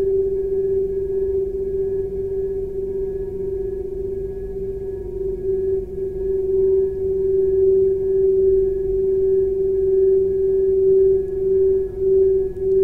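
Crystal singing bowl sounding a sustained G note, one steady tone with fainter higher tones above it, beginning to waver gently about halfway through.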